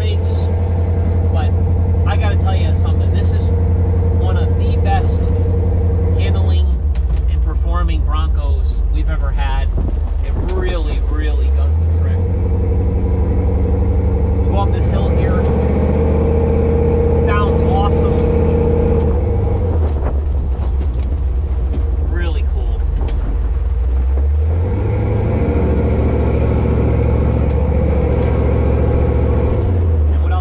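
A 351 Windsor V8 in a custom 1976 Ford Bronco with a C-4 automatic, heard from inside the cab while driving. The engine's drone steps down and climbs back up twice as the Bronco eases off and accelerates.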